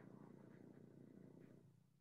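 Near silence: a faint low buzzing rumble that fades out near the end.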